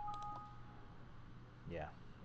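Two steady electronic tones sounding together, like a telephone keypad tone: the higher one stops within the first half second, the lower one about a second in. A faint steady hum lies underneath.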